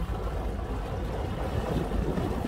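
A boat under way: a steady low rumble with wind noise on the microphone.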